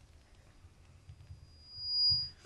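Quiet room tone, then near the end a single high, steady whistling tone that swells quickly to become the loudest sound.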